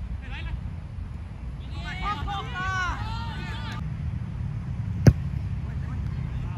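Players shouting across an outdoor football pitch for a couple of seconds, over a low steady rumble. One sharp thud rings out about five seconds in.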